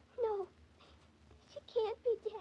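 A little girl's crying in a 1940s radio drama recording: two short, high, falling sobs, one just after the start and one near the end.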